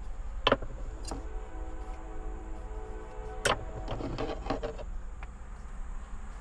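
A few sharp clicks and knocks from handling things at a camper van's kitchen counter, about half a second, one second and three and a half seconds in, over a steady low hum.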